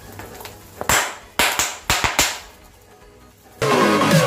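Snap bangs (pop pops) cracking under a fist pressed into a steel plate heaped with them: five or six sharp pops in quick succession between one and two and a half seconds in. Electronic music comes back in near the end.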